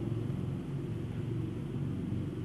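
Steady low background rumble with a faint hum, even in level throughout.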